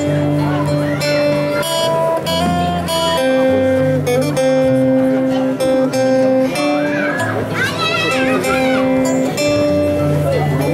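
A live band playing an instrumental introduction: strummed acoustic guitar over long held keyboard chords and a bass line that changes note every second or so. Partway through, a voice comes in briefly over the music.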